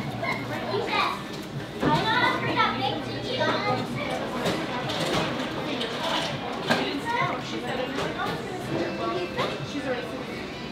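Background chatter of several people talking in a restaurant dining room, with no single voice standing out.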